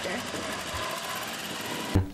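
Sport motorcycle engine idling steadily.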